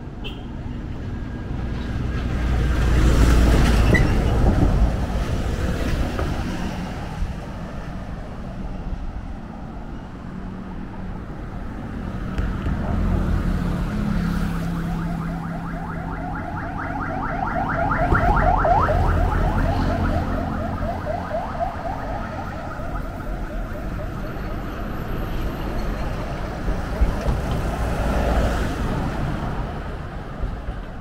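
Road traffic passing on the bridge roadway. One vehicle swells loudly past about three seconds in and another around eighteen seconds, over a steady low traffic rumble.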